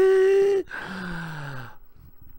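A man's wordless vocal sounds: a loud held note that rises at the start, then a breathy sigh falling in pitch.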